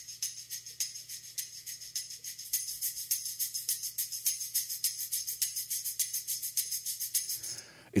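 Percussion tracks played back from a studio mix: a quick, even pattern of high, bright hits. The top end grows brighter about two and a half seconds in, once the Slate Digital Fresh Air high-frequency enhancer is switched in.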